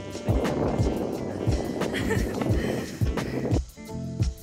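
Background music with a steady beat, over the noise of longboard wheels rolling on asphalt; the rolling noise drops away about three and a half seconds in.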